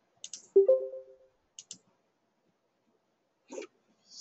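A few small, sharp clicks. About half a second in, a single knock rings briefly with a short low tone that fades away.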